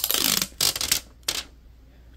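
A hook-and-loop (Velcro) fastener pulled apart in two loud rasping tears within the first second, followed by a brief tick.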